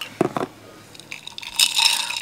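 A short sip through a straw just after the start, then a straw scraping and clinking against the glass of a mason jar as a thick green drink is stirred, loudest in the last half second.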